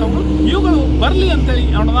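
A man speaking over a steady low rumble.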